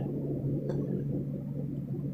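A steady low hum with faint background noise, and a faint tick about a second in.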